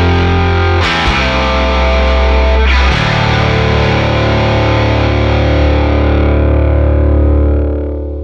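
Distorted Gibson Les Paul through a Marshall Silver Jubilee head, with a Warwick bass through a Gallien-Krueger combo, playing heavy sustained chords together. New chords are struck about one and three seconds in, and the last is left to ring and fades near the end.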